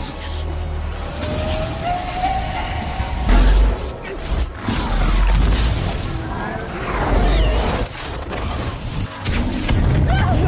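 Film soundtrack mix of dramatic music with deep booms and crashing impacts from spell effects, the heaviest booms about a third, a half and three quarters of the way in.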